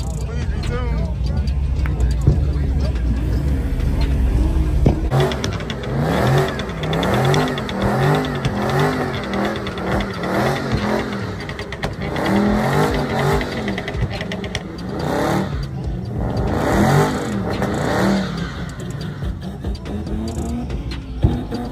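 Dodge Charger's engine revving hard and repeatedly during a burnout, its pitch rising and falling about once a second. A heavy low rumble fills the first few seconds before the revving starts.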